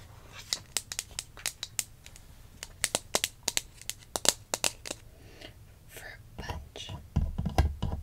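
Long fingernails tapping and clicking on a plastic toy cup in a quick, irregular run of sharp clicks, handled close to the microphone for ASMR. Near the end come a few low, heavier knocks as the cup and hand meet the wooden toy drink dispenser.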